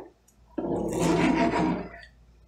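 A spatula stirring thick gravy in a cast-iron skillet: one wet scraping stir, starting suddenly about half a second in and lasting about a second and a half.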